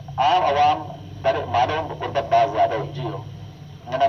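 Speech: a person talking in phrases with short pauses, continuing the surrounding broadcast talk.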